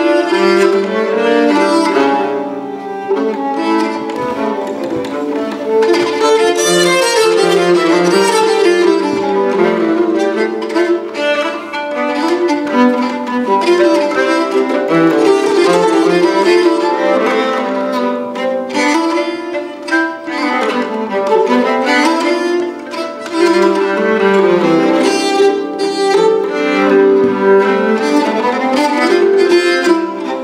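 Two nyckelharpas, Swedish keyed fiddles, played as a bowed duet, with two melodic lines weaving over each other without a break.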